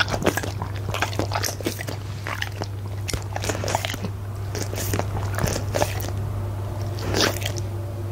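A goldendoodle's mouth sounds close to the microphone: wet clicks, licking and chewing after a drink of water, dense at first and sparser later, with a louder smack about seven seconds in.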